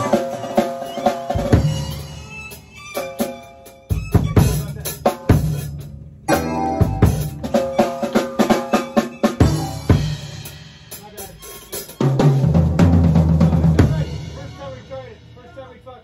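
A funk band's drum kit and keyboards playing the end of a song: busy snare and kick fills with accents over held keyboard chords, a short break about six seconds in, then low bass notes and a final chord that fades out near the end.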